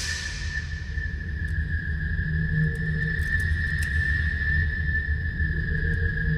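Tense background score: a single high tone held steadily over a low, continuous drone.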